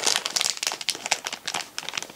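Glossy paper checklist card crinkling as it is handled: a rapid run of small crackles that thins out near the end.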